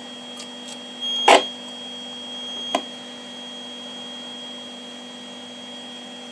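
A steady high tone of about 3200 Hz over a low mains hum. The tone is the audio beat note from an SDR receiver picking up a signal-generator signal coupled between two homemade E-field probes. Several sharp clicks come as BNC connectors are plugged onto the probes, the loudest about a second in and another near the three-second mark.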